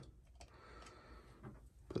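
A few faint, sharp little clicks of a small metal washer being slipped off a chainsaw's clutch-side shaft and handled.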